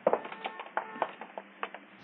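Radio-drama sound effect of footsteps: a run of light, irregular clicks, on a narrow-band 1952 radio transcription.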